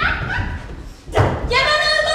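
A heavy thud on the wooden stage floor about a second in, followed by a loud, high-pitched held shout.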